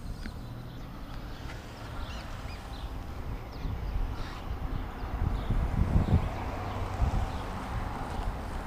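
Irregular footsteps and knocks on a fibreglass boat deck as people climb about on it, heavier after about five seconds, over a low rumble of wind on the microphone.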